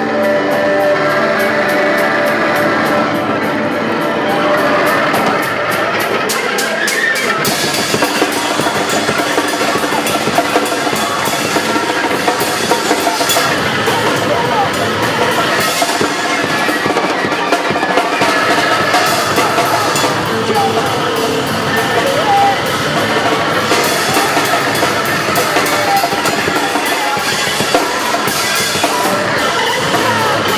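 Live rock band playing loud, with electric guitar and a drum kit; the sound fills out with more cymbal and high end from about seven seconds in.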